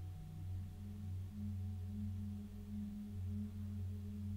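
Soft, low sustained tones of a meditative background drone, swelling and easing gently without a beat.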